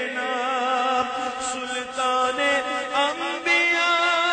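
A man singing a naat, an unaccompanied Urdu devotional hymn, into a microphone in long held, wavering notes.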